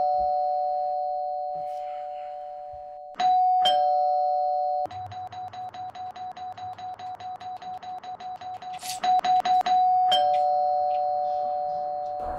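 Two-note electronic doorbell chime sounding ding-dong, a higher note falling to a lower one, at the start and again about three seconds in. Then it is pressed over and over, about six chimes a second for some four seconds, and ends with one more full ding-dong about ten seconds in.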